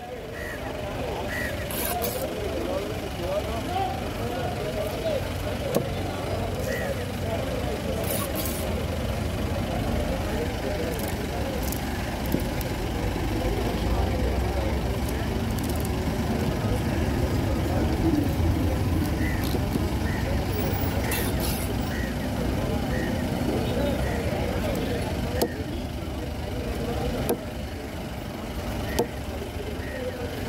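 Busy roadside ambience: a steady low rumble of passing or idling vehicles under continuous background chatter, with a few sharp knocks of a knife on a wooden cutting table as tuna is cut.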